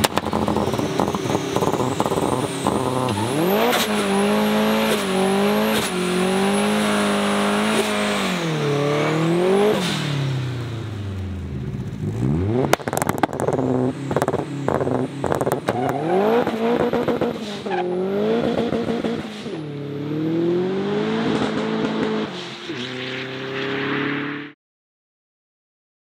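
Heavily turbocharged Volvo 745 (big Holset HX40 turbo) doing a burnout pull, wheels spinning: the engine revs climb and fall back several times, with a high whistle rising over the first few seconds and holding, then a run of sharp cracks in the middle.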